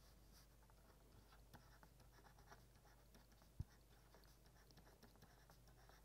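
Near silence: faint scratching and tapping of a stylus writing on a tablet, with one small tap about three and a half seconds in, over a faint low electrical hum.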